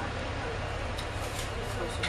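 Volvo B7TL double-decker bus's six-cylinder diesel idling, heard from inside the bus as a steady low hum, with faint voices over it.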